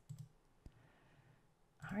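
A single faint computer mouse click in a quiet pause, followed near the end by a voice starting to speak.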